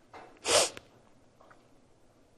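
A person's single short, sharp burst of breath about half a second in, sneeze-like, after a faint intake.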